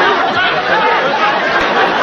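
Studio audience laughing, many voices at once, loud and steady.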